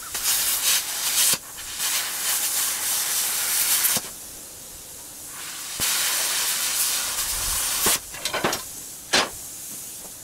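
Metal-cutting torch cutting scrap short iron: loud hiss in three long bursts that start and stop sharply, with a softer steady hiss between them. A few sharp knocks near the end.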